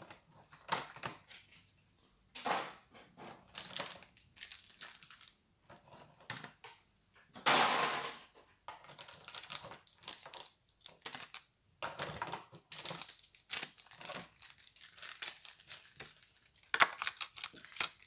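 Packaging being handled and moved around: crinkling and rustling in irregular bursts, with a longer, louder rustle a little before halfway through.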